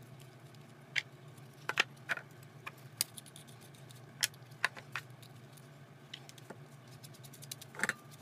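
Plastic plumbing fittings clicking and knocking as gloved hands take off a cap and fit its parts into a cross tee: a scattering of short, light, sharp clicks with pauses between.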